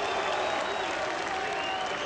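Arena crowd applauding and cheering steadily, the response to a boxer's ring introduction, with scattered voices in it.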